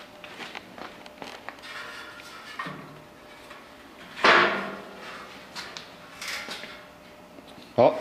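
Steel tubing of a welded swing-out trailer ramp being shifted by hand, with light scraping and small knocks and one sharp metal clank about four seconds in.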